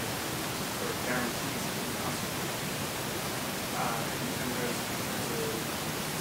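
Steady recording hiss with faint, distant speech from an audience member asking a question, too quiet to make out.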